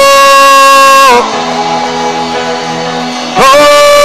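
A man praying in tongues into a microphone holds a loud, drawn-out cry that breaks off about a second in. Soft background music with guitar carries on, and a second long held cry, "ho", starts near the end.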